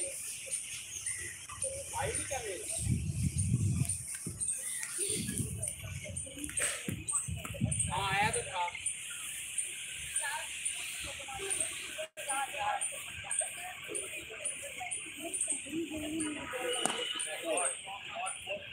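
Indistinct distant voices of players and onlookers on a cricket field, with low rumbles on the microphone a few seconds in. A steady high hiss with a faint, regular ticking about three times a second runs underneath.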